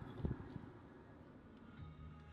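Faint background noise fading out, with a single low thump about a quarter second in; a low note of music starts near the end.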